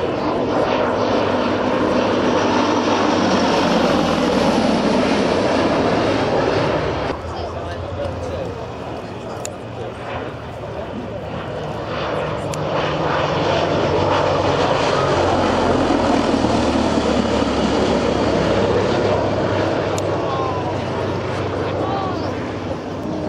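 Gloster Gladiator biplane's Bristol Mercury nine-cylinder radial engine running through a low flying display pass. It fades back about seven seconds in and grows louder again from around twelve seconds.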